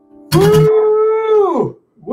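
A man's long whooping cheer: one drawn-out 'whooo' held on a steady pitch and then falling away near the end. It opens with a short burst of crackle.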